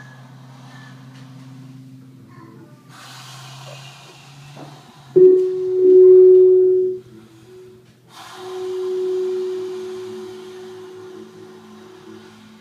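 Improvised live music: a tenor saxophone enters about five seconds in with a loud held note of nearly two seconds, then holds a second long note from about eight seconds that slowly fades, over a low steady drone and patches of hiss.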